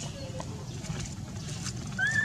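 Steady low background rumble with a few faint ticks and no clear call. The baby macaque's cries fall just outside this stretch.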